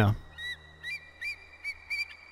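A series of about five short, high, bird-like whistled chirps, each bending in pitch, about two to three a second, over a faint steady high tone.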